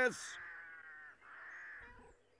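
A crow cawing: two drawn-out, hoarse caws one after the other.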